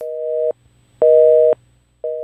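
Telephone busy signal: two half-second beeps of a steady two-note tone, a second apart, the sign that the called line is engaged.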